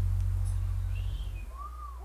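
Last low note of a live reggae band's song ringing on and dying away about a second and a half in, followed by a couple of short rising-and-falling whistle-like chirps.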